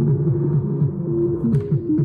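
Eurorack modular synth playing a sequenced electronic pattern through a Teenage Engineering OB-4 speaker: Endorphin.es Queen of Pentacles drum voices with a quick downward pitch drop repeat several times a second over a held synth tone from the Chainsaw voice and Dual Dagger filter.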